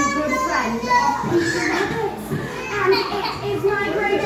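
Young children's voices and chatter mixed with indistinct speech.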